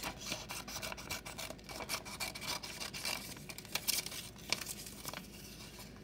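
Scissors cutting a paper strip, with irregular snips and the paper rubbing and rustling as it is handled.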